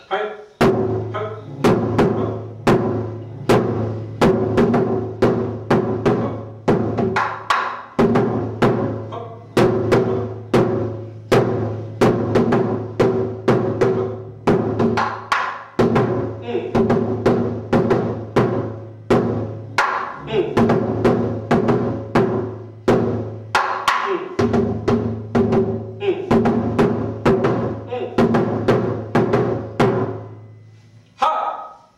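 Barrel-shaped taiko drum struck with a pair of wooden sticks, playing a steady rhythmic pattern of about two to three strokes a second. Each stroke rings low on the drum, with short breaks in the ringing about 16 and 24 seconds in.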